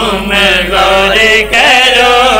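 Several men chanting a drawn-out devotional refrain together into a microphone, holding long wavering notes, with a brief break about one and a half seconds in.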